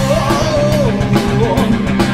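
Hard rock band playing live: electric guitar and a drum kit with cymbal hits, with a lead part that slides up and down in pitch.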